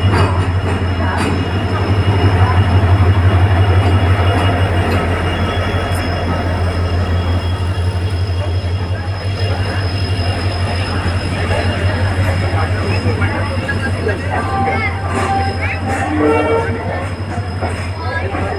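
Diesel-hauled passenger train pulling into a station platform: the WDP4D locomotive passes at the start, then the coaches roll by with a steady low rumble and wheel-on-rail noise, loudest a couple of seconds in.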